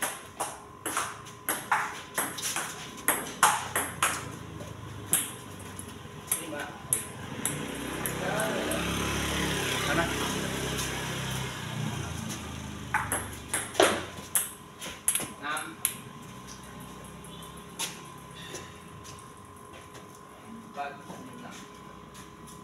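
Table tennis ball clicking back and forth off the table and the bats in a fast rally, with a quick run of clicks through the first several seconds and another run a few seconds after the middle, then only scattered hits. In the middle, a louder rushing noise swells up and fades away over about five seconds.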